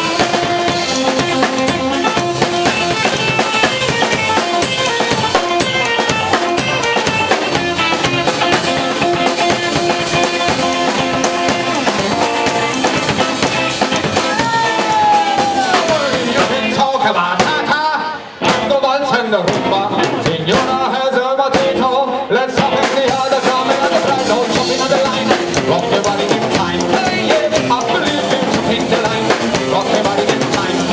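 Live blues-rock band playing an instrumental passage: drum kit with bass drum, snare and rimshots driving under electric guitar. About halfway through, a long downward pitch glide, then a brief drop in level before the band comes back in full.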